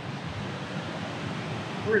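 Steady, even rushing noise with no engine note.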